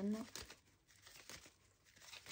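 Tarot cards being shuffled and handled by hand: faint, scattered card flicks and rustles at irregular intervals.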